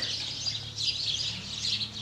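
Birds chirping, a dense, steady chatter of many short, high overlapping notes with no single song standing out.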